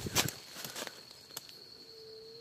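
Footsteps pushing through dry leaf litter and brush, with a sharp crackle just after the start and a few twig snaps over the next second and a half. A steady high-pitched insect drone runs underneath.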